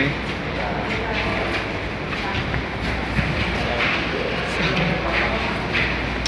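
Busy background ambience: indistinct voices over a steady low rumble and hiss.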